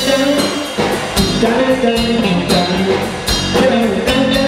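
A blues band playing live: electric guitar, electric bass and drum kit playing together, with drum strikes coming at a regular beat.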